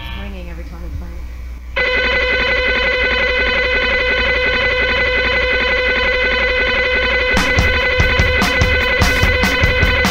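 Live rock band starting a song through the soundboard: a sustained electric guitar chord comes in suddenly about two seconds in and holds steady, and the drums join in with quick hits about seven seconds in.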